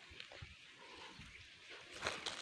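Near silence: faint outdoor background with a few soft ticks.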